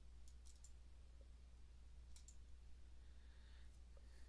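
Near silence: a low steady hum, with a few faint clicks, a quick cluster about half a second in and another just after two seconds.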